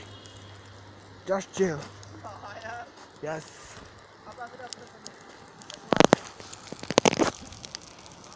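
Footsteps crunching on loose gravel and stones on a steep slope, with two loud, sharp crunches about six and seven seconds in.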